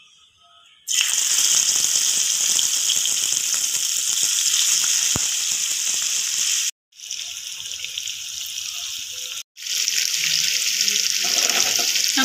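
Spice-marinated prawns frying in hot oil in a wok: a loud, steady sizzle that starts abruptly about a second in. The sizzle cuts out briefly twice, and a woman's voice comes in near the end.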